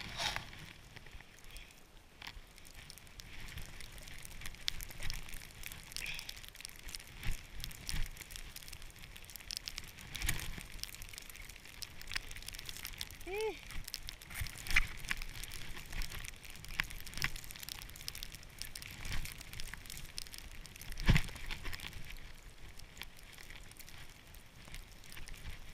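Skis sliding through deep powder snow, a steady hiss broken by irregular crunches, crackling and a few louder knocks, picked up close on a body-worn camera.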